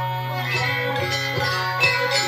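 Live Banyuwangi gamelan ensemble playing dance accompaniment: struck metal keys and gongs ringing in a steady rhythm over sustained tones.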